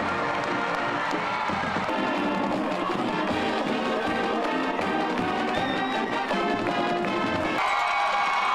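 Band music with brass playing steadily, with crowd cheering underneath.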